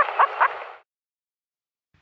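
Black grouse (blackcock) bubbling: a string of short cooing notes over a hiss, about four a second, that cuts off suddenly under a second in, followed by silence.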